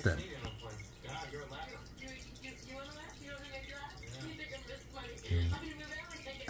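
Turtle-tank filter outflow pouring and splashing steadily into the water, a continuous trickling wash.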